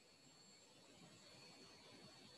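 Near silence: faint steady hiss with a thin, steady high-pitched tone.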